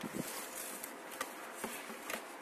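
Packaging being handled in a cardboard box: plastic and foam rustling, with several light clicks and knocks.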